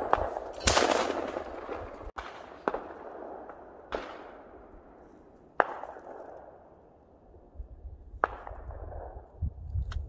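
Over-under shotgun, a Blaser F3, fired once about two-thirds of a second in: a loud report that fades away over a second or two. Several fainter sharp cracks follow, a second or more apart.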